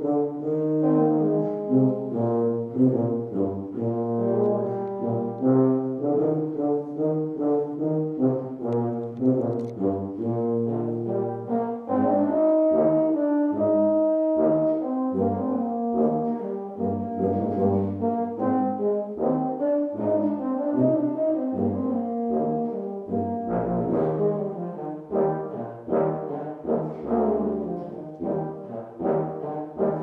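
Euphonium and tuba playing a duet: the tuba's low notes under the euphonium's quicker line, with a few longer held upper notes about halfway through.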